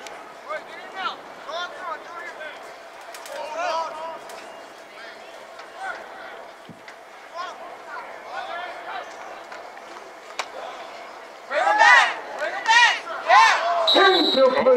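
Scattered voices of players, coaches and spectators calling out across a football field, then loud, high-pitched shouting from nearby spectators near the end.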